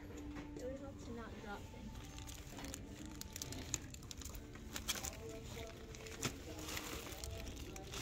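Quiet shop background with faint distant voices, and occasional crinkles of plastic packaging and light knocks as bagged craft items are handled.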